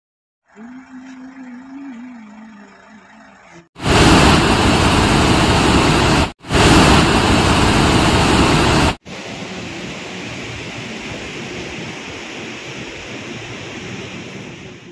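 Water rushing out of a dam's open spillway gates, heard in several separate clips: moderate at first, much louder from about four to nine seconds, then a steadier, softer rush.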